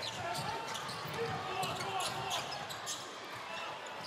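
Basketball being dribbled on a hardwood court, short irregular bounces over a steady arena crowd hum with faint voices.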